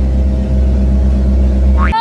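Boat engine running with a loud, steady low drone. It cuts off abruptly near the end, as a rising sung note leads into music.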